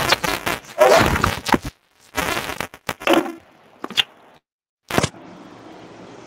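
A man laughing, then crackly, broken-up bursts of sound over a staticky call connection. The audio cuts out completely for about half a second near the middle, then a sharp click and a steady hiss follow.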